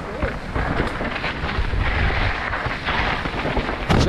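Mountain bike descending a rough dirt singletrack: wind buffeting the microphone over the continuous rumble and rattle of tyres and bike on the trail, with frequent small knocks from bumps.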